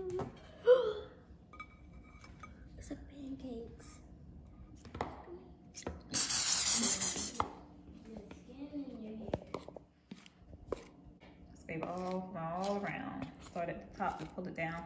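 A loud burst of aerosol cooking spray, about a second and a half long, coating a small metal baking pan. A sharp clack from the pan comes about a second in.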